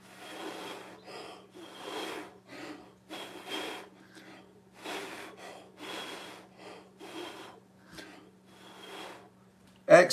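A person blowing by mouth onto wet acrylic paint on a canvas, in a series of about seven short breathy puffs roughly a second apart, with quick breaths drawn in between. The puffs push the poured paint outward into wispy, smoky lacing.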